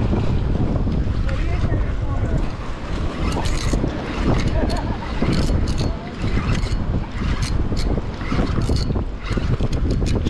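Wind buffeting the microphone in a steady low rumble, with scattered short clicks and taps throughout.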